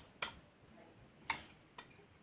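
A few light, sharp clicks of a utensil or batter bowl knocking, about a fifth of a second in, then again after about a second and a half, with a softer one shortly after.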